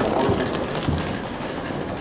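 Steady street background noise with a low rumble and a couple of low thumps in the first second.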